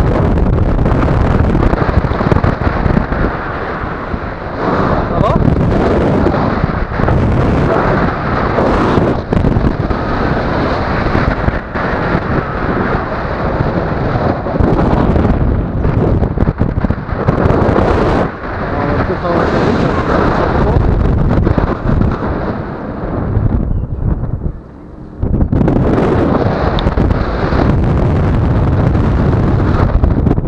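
Loud wind buffeting the microphone of a tandem paraglider in flight: a continuous rushing, rumbling noise that rises and falls in strength and eases briefly near the end.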